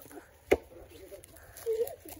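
A single sharp knock, about half a second in, over faint background voices; a short voice sound comes near the end.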